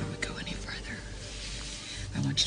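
A soft, breathy whisper from a person's voice early on, over quiet background music that fades out.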